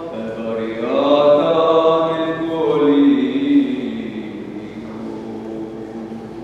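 Orthodox liturgical chant sung by voices: a melodic phrase that steps down to a long held note about three seconds in, growing softer over the last seconds.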